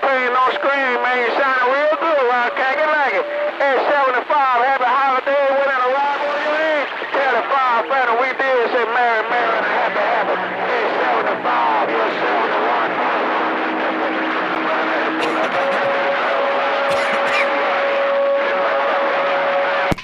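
CB radio receiver speaker carrying unintelligible voices over band noise for about nine seconds, then static with steady whistling tones from carriers on the channel.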